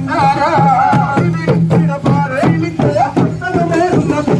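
Folk music: a voice singing a wavering melody over a steady percussion beat.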